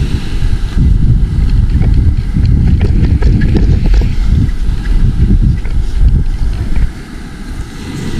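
Wind buffeting the microphone: a loud, uneven low rumble that eases briefly near the end.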